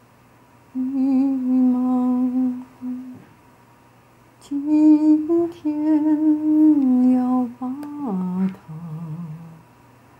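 A woman humming a slow, wordless tune in two long held phrases, then stepping down to a lower, softer note near the end.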